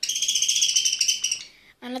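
Budgerigar squeaking in one harsh, unbroken high-pitched call lasting about a second and a half, then stopping abruptly.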